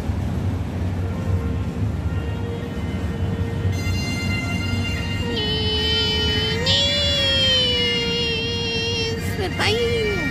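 Bagpipes playing: a steady drone comes in about a second in, and the chanter's melody joins over it about five seconds in.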